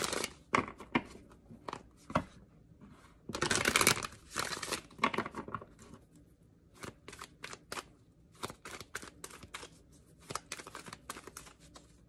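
A deck of moon oracle cards being shuffled by hand. There is a dense burst of card noise about three to four seconds in, then a run of quick, light card clicks and flutters through the second half.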